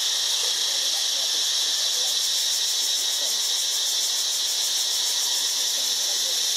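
Steady, high-pitched insect chorus, with a faint fast pulsing in its highest part through the middle of the stretch.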